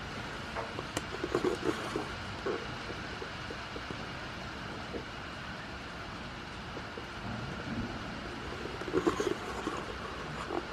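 Steady hiss of light rain on the goat house, with a few short soft sounds close by about a second in and again near the end.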